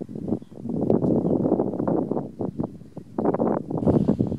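Wind buffeting the microphone in irregular gusts, a rough low rumble that swells and fades.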